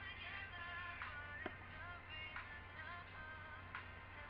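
A song with singing plays faintly in the background, over a steady low hum.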